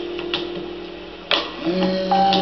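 Band warming up on stage: sharp drum hits about once a second over a fading held note, then fresh sustained notes come in, one sliding upward, near the end.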